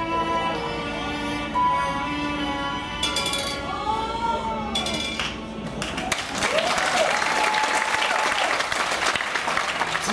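Background music with sustained tones and a gliding melody, joined about halfway through by an audience applauding.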